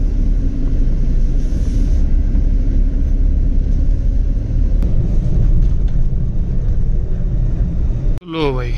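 Steady, loud rumble of a car being driven, with engine and road noise heard from inside the cabin.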